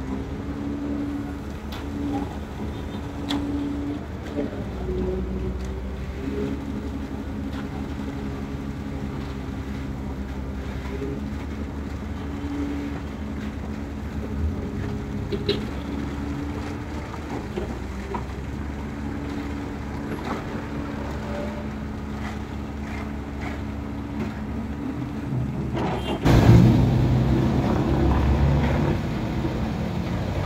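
Diesel engines of an excavator and a concrete mixer truck running steadily during a concrete pour, a low, even hum with slight shifts in pitch. About 26 seconds in, a much louder, rougher noise suddenly takes over.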